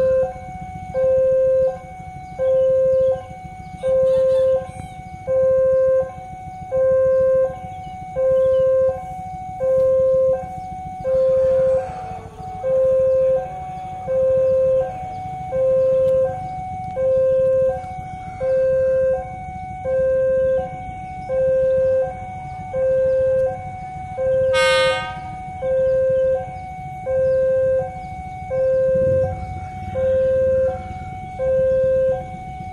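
Railway level-crossing warning alarm sounding, an electronic two-tone ding-dong that alternates a lower and a higher tone over and over, over a low rumble. A brief high squeal cuts in about 25 seconds in.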